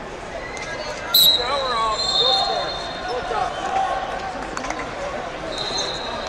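A referee's whistle blown sharply about a second in and held for about a second and a half, then blown again near the end, stopping the wrestling. Shouting voices from the sidelines run under it.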